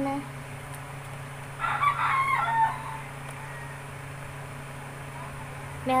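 A rooster crowing once, about a second and a half in, lasting about a second.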